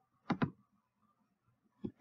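Computer mouse clicking: a quick pair of clicks about a third of a second in and a single click near the end, with near silence between.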